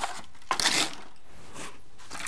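Gloved hands scooping and scraping loose potting compost in a plastic trug, with a short gritty rustle about half a second in.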